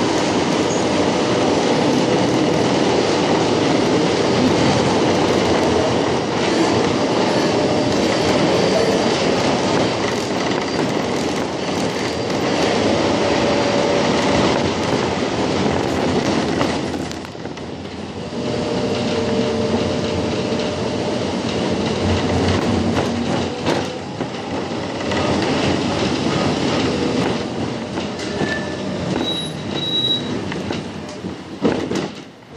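Budapest line 2 tram running, heard from inside the car: a steady rumble of steel wheels on rails with faint drawn-out wheel squeal at times. The noise drops briefly just past the middle, then picks up again.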